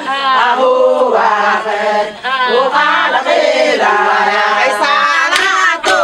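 A group of women singing together, many voices at once, with a few sharp hand claps near the end.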